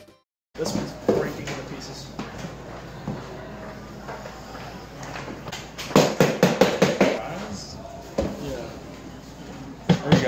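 Indistinct chatter of several people in a reverberant room while tubs of ice cream are emptied into a metal trash can, with a quick run of knocks about six seconds in.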